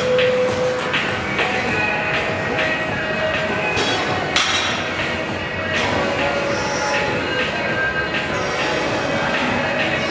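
Busy gym din: a steady clatter of metal weights and bars with repeated knocks and clinks, and faint music underneath.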